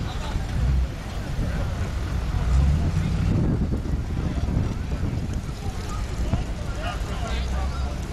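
Jeep Wrangler crawling slowly over a log obstacle, its engine running low under a rumble of wind on the microphone, with spectators talking in the background.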